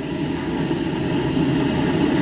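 Hand-held propane torch burning with a steady flame noise as its flame heats a steel cup.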